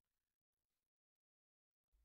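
Near silence: a pause in the narration with only faint background noise.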